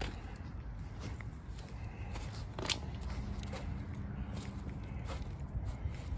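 Footsteps on dirt ground with phone handling noise over a low steady rumble, and one sharper click a little under three seconds in.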